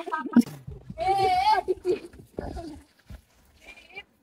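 A single goat-like bleat with a wavering pitch, about half a second long, about a second in, after a few spoken words.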